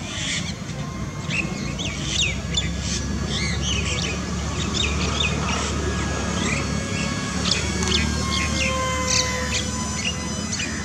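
Songbirds chirping, with many short, quick calls scattered throughout over a low steady rumble. Near the end a faint thin whine slides slightly down in pitch.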